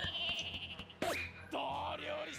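Anime soundtrack at low volume: a high wavering cry in the first second, a sharp hit about a second in, then a cartoon character shouting in a wavering voice.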